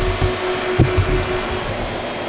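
Steady whir of the cooling fans in a rack of multi-drive storage servers, with a few low handling thumps in the first second or so.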